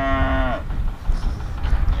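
A young heifer mooing: one drawn-out call that falls in pitch and ends about half a second in.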